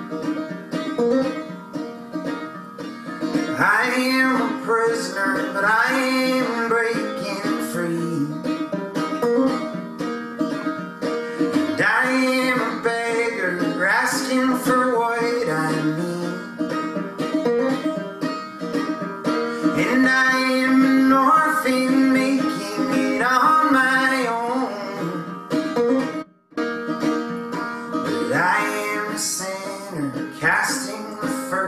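Banjo picked steadily as folk accompaniment, with a man's voice coming in singing about three seconds in. The sound cuts out sharply for a split second about three-quarters of the way through, then the song carries on.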